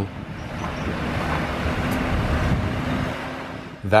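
Articulated city bus driving past, a steady rush of engine and tyre noise that swells to a peak about halfway through and then fades.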